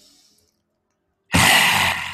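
A woman's lion's breath in yoga. The tail of a slow inhale fades out, then just past halfway comes a sudden, loud, rasping exhale from the throat, pushed out through a wide-open mouth with the tongue out, tapering off.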